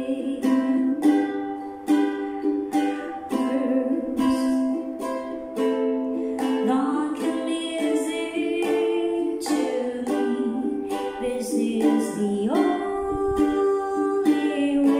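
Acoustic ukulele strummed in a steady rhythm of chords, about two strums a second, in a small room.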